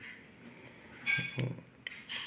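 Faint handling noise: a short scrape and a sharp click about a second in, then a lighter click near the end, from a plastic DIN-rail protection module being turned over in the hand.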